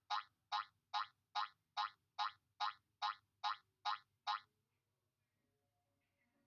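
A rapid train of identical short blip sound effects, about two and a half a second, eleven in all, stopping about four and a half seconds in. Each blip marks a quilt square sliding into place in the lesson animation.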